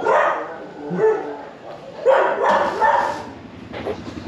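A dog barking repeatedly, several short loud barks about a second apart.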